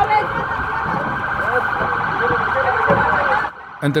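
Police patrol car sirens wailing with a fast warble, cutting off suddenly about three and a half seconds in. They signal approaching police patrols.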